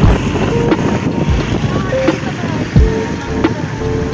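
Wind buffeting the microphone on a moving scooter, with low thumps near the start, about a second and a half in and about three seconds in, under background music.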